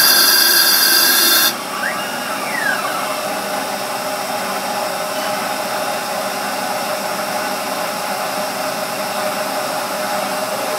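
Star SR-16 CNC Swiss-type lathe running a demonstration cycle. A loud, high hissing whine with several steady tones cuts off suddenly about a second and a half in. Two brief whistles rise and fall just after, and then the machine runs on with a quieter, steady hum.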